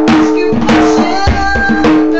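Djembe played with bare hands in a quick, even rhythm of about four strokes a second, with steady held musical tones sounding underneath.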